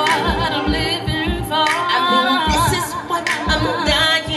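Female R&B vocalist singing long held notes with heavy vibrato over a backing track with a steady beat.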